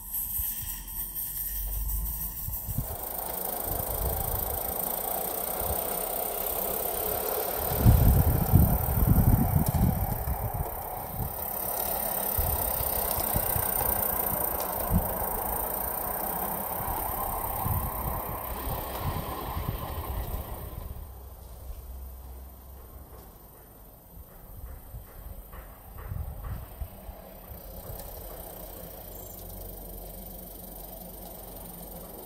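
Accucraft 7/8th-scale live-steam model of the Groudle Glen Railway 2-4-0T Sea Lion setting off and running with its carriages: steady steam hiss with the irregular clatter of small wheels on garden track. A spell of low rumbling about eight seconds in is the loudest part, and the sound drops away after about twenty seconds as the train moves off.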